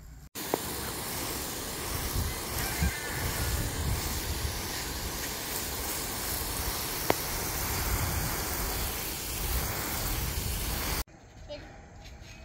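Garden hose pistol-grip spray nozzle on a fine mist setting, a steady hiss of water spraying over newly planted seedlings. It stops suddenly about a second before the end, leaving a much quieter outdoor background. A single short click about seven seconds in.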